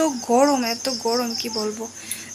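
A woman speaking, over the steady, high, rapidly pulsed chirping of crickets.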